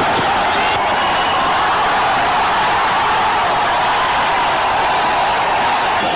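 Stadium crowd at a cricket match, a steady, unbroken din with no individual voices standing out.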